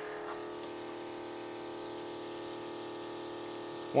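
Small electric pump of a reverse-osmosis sap concentrator running steadily with an even, unchanging hum, pushing birch sap through the membrane.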